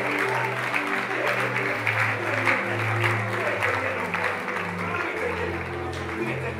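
Church band's organ keyboard playing slow held chords over a bass line, with the congregation clapping.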